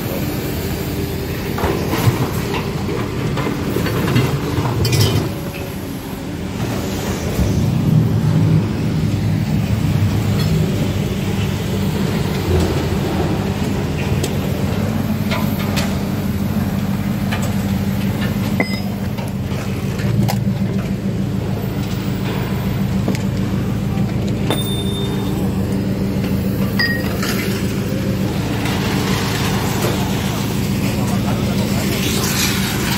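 Steady engine drone of heavy scrapyard machinery running, with a few sharp metallic clinks and knocks scattered through it.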